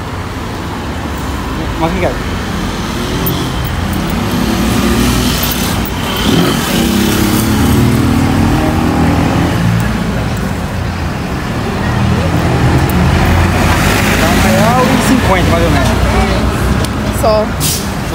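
Road traffic passing close by: vehicle engine rumble that swells twice, with faint talk underneath.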